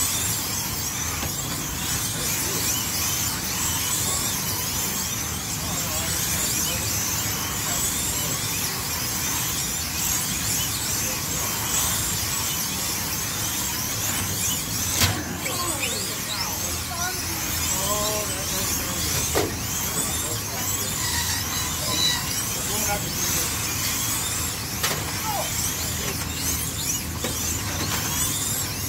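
Electric slot cars racing around a multi-lane track: their small motors whine over and over, rising and falling in pitch as the cars speed up and slow through the turns. A sharp knock cuts through about halfway in.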